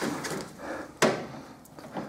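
A plastic side-skirt extension being handled against a car's side skirt: a short rustle, then one sharp knock about a second in.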